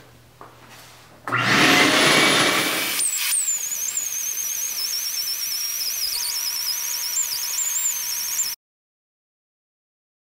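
Quarter-inch die grinder with a round-nose carbide burr starting about a second in and cutting into a cast-iron Vortec cylinder head's combustion chamber, over a steady hiss. Its high whine wavers up and down in pitch as the burr loads and unloads against the metal. The sound cuts off suddenly near the end.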